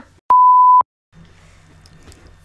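A single steady beep tone, about half a second long, inserted in editing with dead silence either side; a faint low room hum follows.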